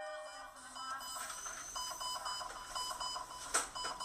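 Quiet hospital ambience: rapid, repeated electronic beeping over a faint hum, with one sharp click about three and a half seconds in.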